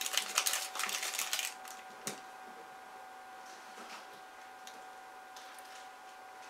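Crinkling and tearing of a candy wrapper as a Reese's Big Cup is unwrapped, a dense crackle for about a second and a half, then a single click. After that, a quiet stretch with a few faint knocks in the background, which sound like a cat raiding the fridge.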